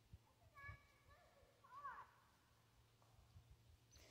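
Near silence, with a faint, high, wavering voice-like call or two in the first two seconds.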